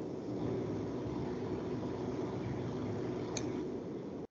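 Steady background hiss and hum of an open microphone on a video call, with one faint click about three and a half seconds in.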